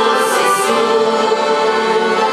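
A small group of mixed voices, a woman's and young men's, singing a Christian hymn together to button-accordion accompaniment, with long held notes.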